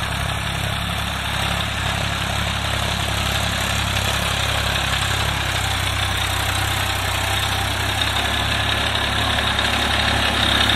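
Massey Ferguson 7250 DI tractor's three-cylinder diesel engine running steadily under load as it pulls a field implement through ploughed soil. It grows a little louder near the end as it draws closer.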